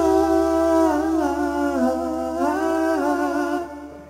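A male singer holding long wordless notes into the microphone, stepping between pitches with short slides, with no drums or strummed guitar under it; the line fades out near the end.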